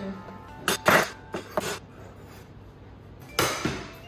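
A kitchen knife clinking and knocking against a cutting board and countertop, four sharp knocks in about a second. About three and a half seconds in comes a brief rushing noise lasting about half a second.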